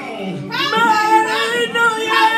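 Paper party horn blown in a long, steady buzzing note. It starts about half a second in and is held to the end.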